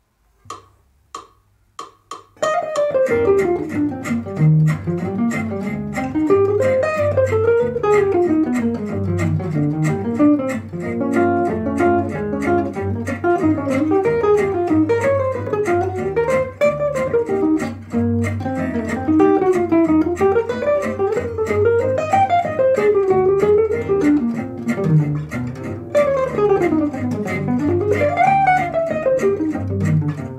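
Four evenly spaced count-in clicks, then an archtop jazz guitar playing a swinging eighth-note bebop phrase, with its lines running up and down, over a jazz backing track with a walking bass line.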